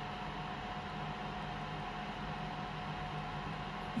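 Steady machine noise with a low hum and a faint high steady tone, from a BGA rework station heating a laptop motherboard toward solder reflow to lift the graphics chip.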